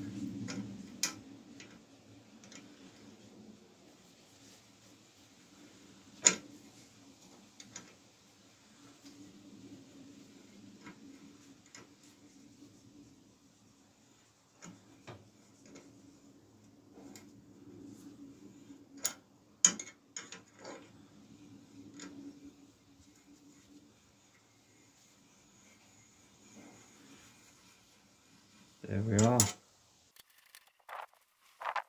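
A thread tap being turned with a ring spanner through the paint-clogged derailleur hanger thread of a freshly painted steel bike frame, cleaning the paint out: scattered sharp metallic clicks of the spanner and tap, the loudest about six seconds in, over a faint low hum. A brief voice sound near the end.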